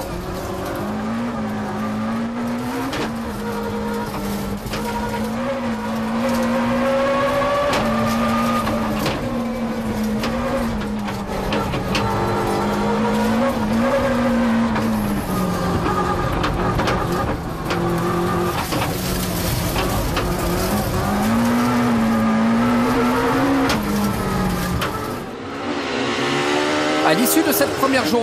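BMW 318 rally car's engine heard inside the cabin at stage pace, its revs climbing and dropping again and again through gear changes. About 25 seconds in, it gives way to another car's engine heard from outside, revving as it approaches.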